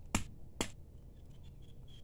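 Two sharp knocks in quick succession, about half a second apart, from carao (Cassia grandis) pods being struck to break them open over a metal bowl.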